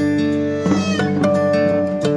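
Acoustic guitar music: plucked chords ringing on, with a quick flurry of notes a little after half a second in.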